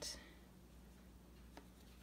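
Near silence: faint room tone, with a soft scuff at the start and one small tap about one and a half seconds in as a paint-covered Duplo block is handled over the table.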